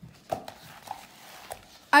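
Faint rustling and soft taps of a paper picture book being handled as it lies open on a table, with a few small clicks. A woman's voice starts to read right at the end.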